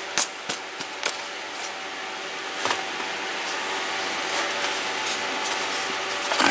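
A small cardboard product box handled and turned over in the hands, giving a few light knocks and rubs, mostly in the first second. Under it runs a steady background hiss with a faint hum.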